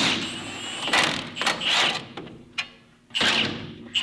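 Metal parts scraping and knocking in about four short bursts from hand work on a car's front wheel hub and steering linkage.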